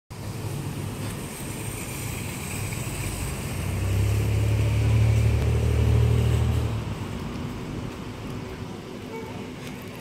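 A car's engine running close by. Its low hum grows louder for about three seconds in the middle and then fades away, like a car going past.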